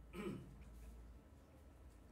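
A man clears his throat once, briefly, just after the start, followed by faint room tone.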